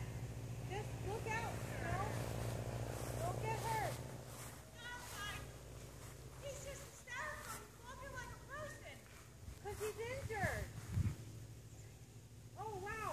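Faint, distant voices of people talking. A low steady hum underlies the first four seconds, and there are a couple of brief knocks near the end.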